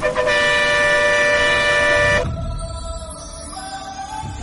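A vehicle horn held in one steady blast for about two seconds, cutting off sharply, followed by quieter music over low traffic rumble.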